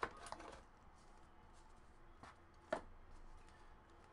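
Faint rustling and light clicks of trading cards and card packaging being handled, with one sharper tap about two-thirds of the way in.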